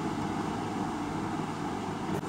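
Steady background noise between spoken phrases: a low hum under an even hiss, with no distinct events.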